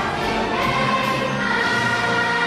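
Children's school choir singing with an orchestra, holding long notes that settle into a steady chord about three-quarters of the way in.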